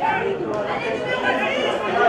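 Indistinct chatter of several voices talking at once, with no single clear speaker.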